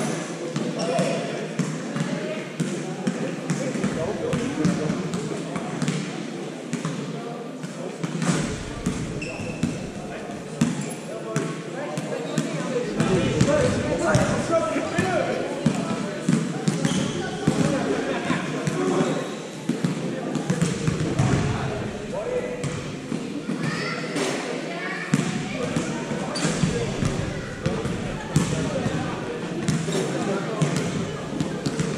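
Handballs bouncing on a sports-hall floor again and again, over a constant hubbub of many voices chatting, all carried by the reverberant hall.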